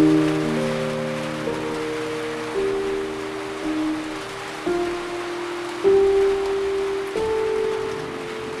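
Steady rain hiss under slow, gentle music: a new held note or chord comes in about once a second and slowly fades.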